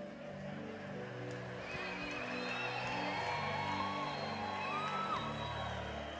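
Soft background music of long held chords, with a congregation cheering and calling out over it. The crowd noise swells over the first few seconds and eases near the end.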